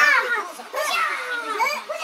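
Young children squealing and laughing in high-pitched, falling cries, several in a row, while they are played with.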